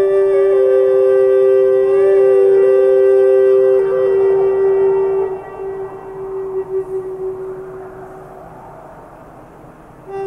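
Slow, flute-like wind-instrument music: a steady held drone note with a second line stepping slowly between notes above it, fading out over the second half.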